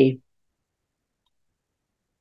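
A spoken word trailing off just after the start, then silence.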